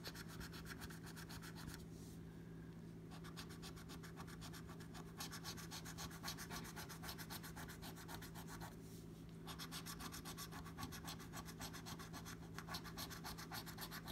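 A coin scratching the silver latex coating off a scratch-off lottery ticket, in fast repeated strokes, faint, with short pauses about two and nine seconds in.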